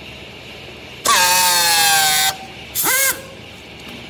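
Pneumatic strapping tool on a bale strap, running in two bursts of air hiss with a whine. The first, about a second in, lasts just over a second and falls in pitch. A shorter burst follows near three seconds.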